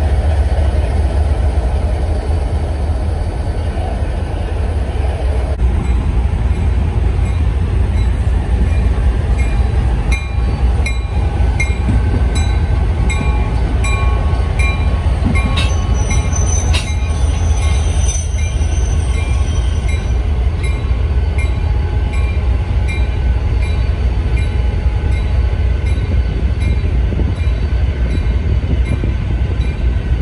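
Vintage diesel locomotives running, a heavy low rumble throughout. From about ten seconds in a locomotive bell rings about twice a second for some ten seconds, and a brief high wheel squeal is heard near the middle.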